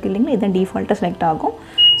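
A woman talking, then one short high-pitched electronic beep near the end from an LG DirectDrive front-load washing machine's control panel as the program dial is turned to a new wash program.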